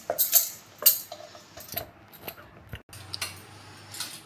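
A rolling pin rolling out puri dough on a round wooden board: a handful of light, irregular clicks and knocks as the pin and hands work the dough.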